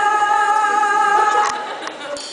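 A long held sung note over backing music, one steady pitch from a musical-theatre number. It cuts off with a click about one and a half seconds in and leaves a fading echo.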